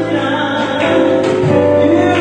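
Live gospel music: a woman singing through a microphone, backed by a band of electric guitar, electric bass and keyboard.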